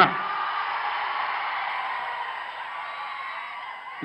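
Noise of a large crowd, cheering and shouting in a pause between lines of a speech, fading slowly.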